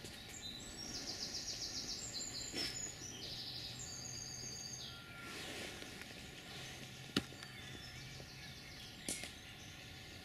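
Songbirds singing, several high, quick phrases of rapidly repeated notes in the first half, over faint outdoor background noise. A sharp click comes about seven seconds in and another near the end.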